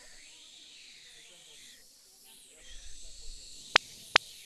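Hissing snake sound effect for a clay snake, its high pitch wavering up and down over and over. A single sharp click near the end.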